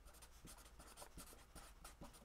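Felt-tip marker writing words on paper: faint, short strokes of the tip on the page.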